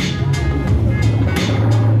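A live electronic hip-hop beat played on a Roland SP-404 sampler: a deep sustained bass line shifting between notes under sharp drum and hi-hat hits several times a second.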